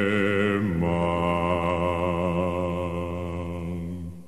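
Low sustained vocal chord in the rock opera's score, held with a slight vibrato. It shifts down to a lower chord under a second in and fades toward the end.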